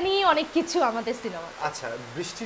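A woman laughing and talking in lively conversation, over a steady background hiss.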